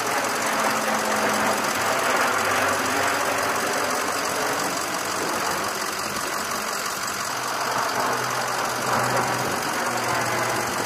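Four-engine turboprop drone of C-130J Super Hercules aircraft in flight, a steady propeller hum with a low tone that shifts slightly in pitch.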